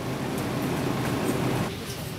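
Shopping cart rolling across a hard store floor: a steady rumble with rattling from its wheels and wire basket.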